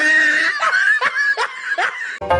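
A person laughing: a run of short, falling 'ha' bursts, about two or three a second.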